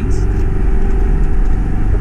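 Car engine and road noise heard from inside the cabin while driving: a steady low drone.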